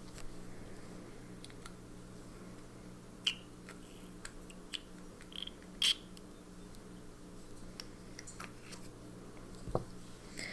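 A few light, sharp clicks and taps from a small plastic ink sample vial and its red screw cap being handled on a desk, the sharpest about six seconds in and a soft thump near the end, over a steady low hum.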